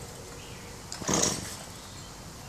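Gas string trimmer pull-started once about a second in, the recoil cord rasping as the engine turns over without catching; it is said to have no gas in it.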